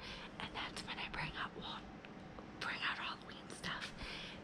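A woman whispering excitedly, a string of breathy syllables with a short pause in the middle.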